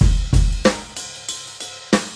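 Drum part of a Yamaha PSR-SX900 arranger keyboard style playing on its own, the other parts turned down. A deep, booming kick drum opens the bar, followed by snare, hi-hat and cymbal hits in a steady groove.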